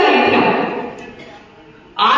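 A woman speaking loudly into a handheld microphone: one drawn-out word fades away over about a second and a half, and she starts speaking again near the end.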